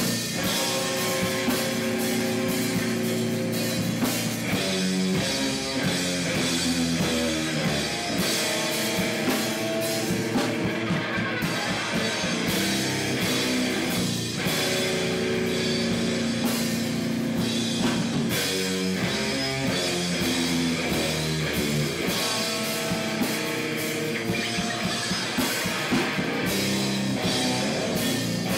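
A live heavy metal band playing an instrumental passage: distorted electric guitar riffs over a drum kit with steady beats and crashing cymbals.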